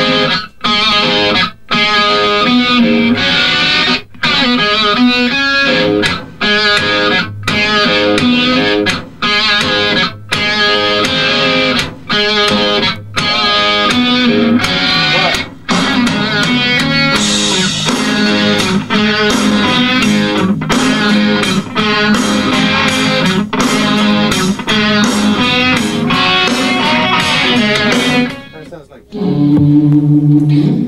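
Electric guitar riff played with a band in the studio, stopping and starting with short breaks every second or two.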